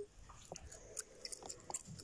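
Faint, scattered small clicks and rustles of a plastic toy figurine being handled by fingers as it is shifted in a miniature wooden chair.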